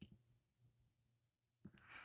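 Near silence: faint room tone with a few tiny clicks, one at the start, one about half a second in and one near the end.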